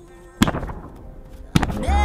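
Hand slapping the taut plastic skin of a giant inflated Wubble Bubble ball twice, about a second apart, each slap a sharp boom with a short ringing tail. Background music with a heavy bass comes in near the end.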